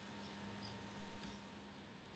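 Quiet pause with faint background hiss and a steady low hum, with no sound event.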